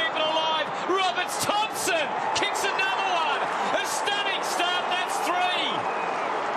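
Stadium crowd cheering a goal, with many overlapping shouts rising and falling over a steady roar.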